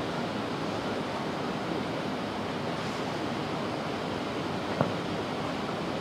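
Steady rushing background noise of an open-air court, with no clear source standing out, and a single short knock about five seconds in.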